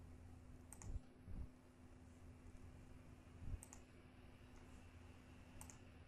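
Three faint computer mouse clicks, roughly two to three seconds apart, over near-silent room tone with a faint steady hum, as points are picked on screen in a drawing program.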